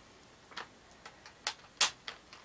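A few light, irregularly spaced clicks or taps, the loudest just before the end.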